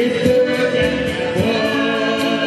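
Live Brazilian roots (música raiz) band: a woman singing into a microphone over accordion and acoustic guitars, with a steady beat.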